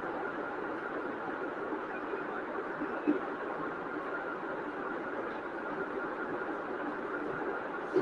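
Steady background rumble-like noise with no speech, and a brief small knock about three seconds in.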